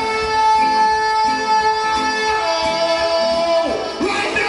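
Live reggae band playing under a male singer holding one long high note, which steps down to a lower pitch a little past halfway and falls away just before the end.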